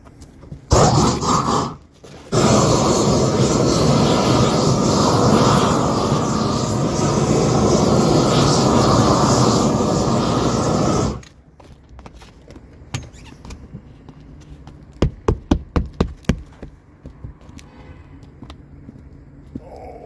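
Propane roofing torch burning with a steady rushing noise as it heats the seam edge of a torch-on cap sheet: a short burst about a second in, a brief break, then about nine seconds of continuous burning before it cuts off suddenly. A few seconds later comes a quick run of about eight sharp taps.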